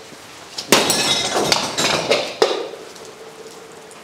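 Glass shattering when an object is thrown into it: a sharp crash about three-quarters of a second in, then a few clinks of falling pieces over the next couple of seconds.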